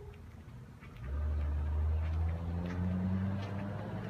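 An engine starts running about a second in, a steady low hum that shifts up slightly in pitch partway through.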